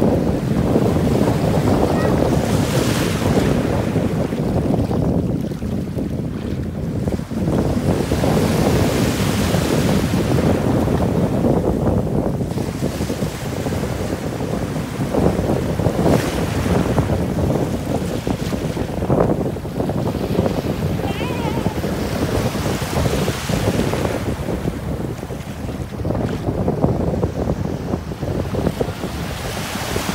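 Small sea waves washing in and breaking at the shoreline, the rush of surf swelling and easing every few seconds, with wind buffeting the microphone.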